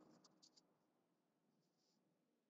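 Near silence: room tone, with a few faint ticks in the first half second.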